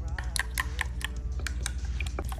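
A thin utensil clicking and tapping against a glass jar as chia seed pudding is stirred: a quick run of light clicks, about five a second, over a steady low hum.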